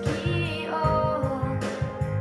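Instrumental backing music of a pop ballad: a pulsing bass line under a melody line that moves and falls about halfway through.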